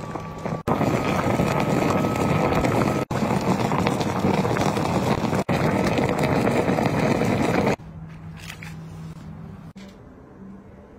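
Dark braising liquid boiling hard in a pot around a pig's head: a loud, dense bubbling and crackling. It breaks off for a moment a few times and stops suddenly near the end, leaving a faint low hum.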